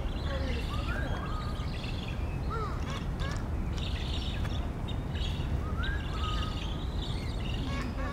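Birds chirping and calling: clusters of short high chirps with a few whistled gliding calls, over a steady low background rumble.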